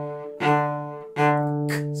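Cello played with the 'click and coast' bow stroke: two separate bow strokes on the same low note, each starting with a crisp click as the bow catches the string, a consonant-like 'K', then fading as the bow coasts.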